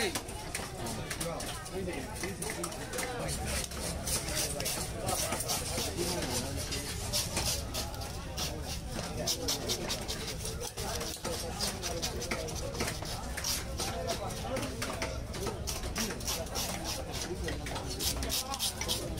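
Knife scraping scales off a large black pomfret on a wooden chopping block: many quick, short scraping strokes, with voices chattering in the background.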